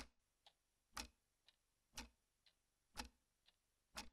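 Analog clock ticking quietly and steadily, about two ticks a second, with a stronger tick on each second and a softer one halfway between.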